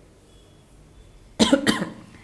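A woman coughing: two or three quick, loud coughs about one and a half seconds in, after a faint squeak of a marker drawing on a whiteboard.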